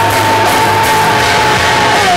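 Live rock band playing loud on electric guitars and drums, with a long high note held over the band.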